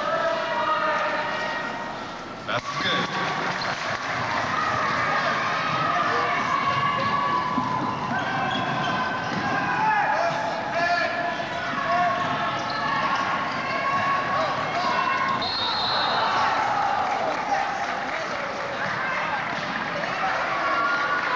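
Basketball gym sound: players and spectators calling out and chattering, echoing in the arena, with a sharp knock about two and a half seconds in. A short, high referee's whistle sounds a few seconds before the end.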